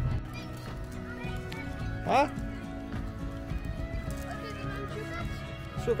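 Background music with two short, loud animal calls that sweep quickly in pitch, one about two seconds in and another at the very end.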